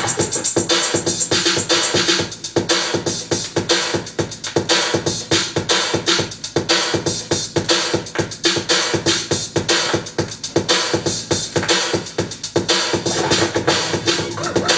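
1980s dance track played from vinyl on DJ turntables, with a steady, driving beat.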